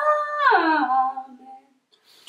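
A girl singing a long held note. It slides down in pitch about half a second in and fades out before the end.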